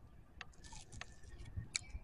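Faint mouth sounds of a man biting and chewing a sauced chicken wing, with three soft clicks.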